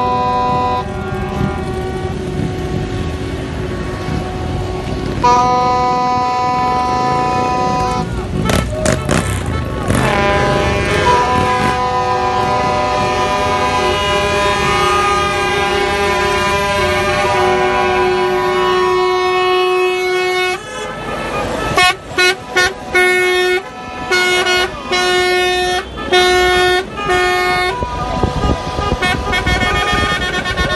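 Car horns and truck air horns honking together, several pitches at once in long held blasts, then a run of short repeated honks for several seconds before the long blasts resume near the end.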